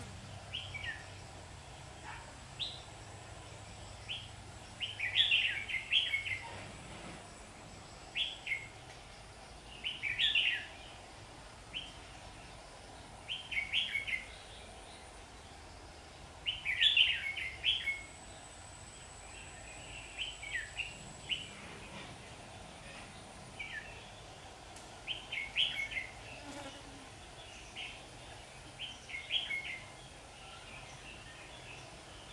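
Red-whiskered bulbul singing: short, bright chirping phrases repeated every few seconds.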